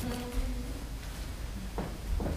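Quiet room tone with a faint steady hum during the first second and a soft knock near the end.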